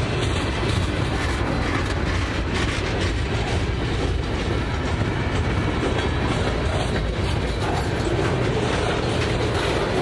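Freight cars of a CSX freight train rolling steadily past close by: a continuous loud noise of steel wheels running on the rails, with a light clatter over the rail joints.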